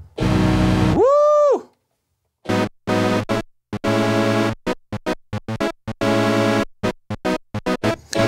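Yamaha Reface CS virtual-analogue synthesizer being played on its keys. It opens with a held note that swoops up and back down in pitch. After a short pause comes a run of short, clipped notes mixed with longer held ones.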